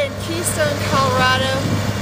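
Snowcat engine running steadily with a low, even drone, under a woman's speaking voice.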